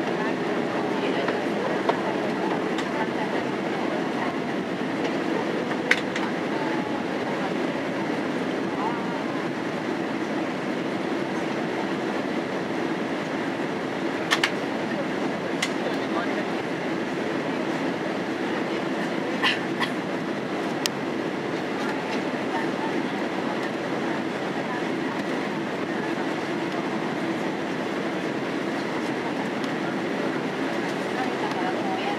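Steady cabin noise of a Boeing 767-346 airliner on approach with flaps extended: the jet engines and the airflow over the airframe make a constant rush. A few sharp clicks cut through it, at about 6 s, at about 14 s and between about 19 and 21 s.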